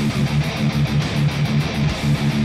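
Ibanez RGA-series electric guitar through an amp simulator, playing a fast metal riff of short, repeated low notes, with drums behind it.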